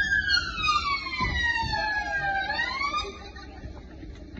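Police siren wailing: its pitch falls slowly for about two and a half seconds, rises again briefly, and cuts off about three seconds in.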